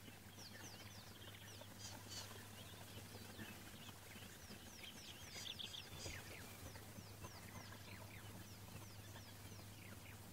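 African wild dogs twittering: faint, high, falling chirps repeated in quick irregular runs, over a low steady hum.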